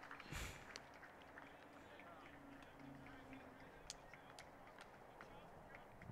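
Near silence: faint outdoor ambience with a few faint, scattered ticks.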